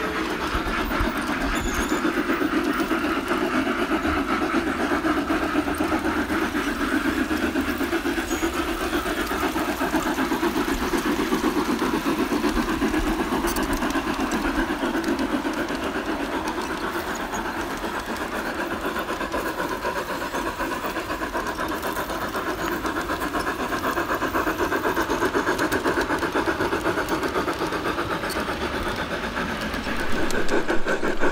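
F-scale (1:20.3) model narrow-gauge steam locomotive and train running along garden track: a steady running noise with fast, fine clicking of wheels and drive over the rails.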